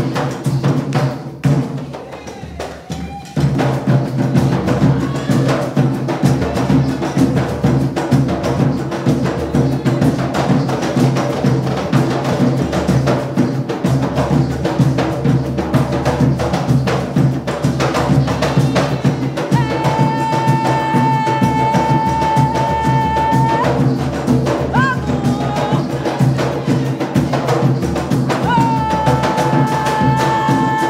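Live Candomblé percussion: several hand-played rawhide drums beat a dense, steady rhythm. The drums thin out briefly about two seconds in, then come back in full. In the second half a long high note is held twice over the drumming.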